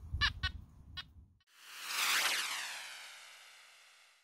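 A few short bird calls over low wind noise in the first second or so, then a swelling transition whoosh effect that peaks about two seconds in and slowly fades, cutting off as the picture changes.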